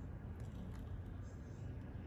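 Quiet room tone: a steady low hum, with a couple of faint soft ticks.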